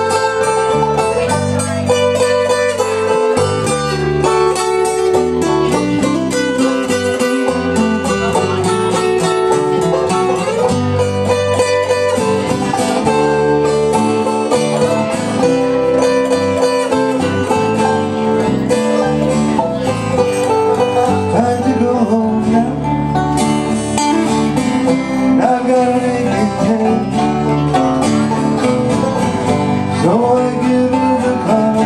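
A live acoustic band playing an instrumental passage. Banjo and two acoustic guitars are strummed and picked over an electric bass guitar, with no words sung.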